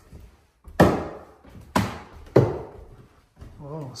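Footsteps climbing a wooden staircase: three heavy steps land on the wooden treads, each followed by a short ring. Near the end the stairs creak.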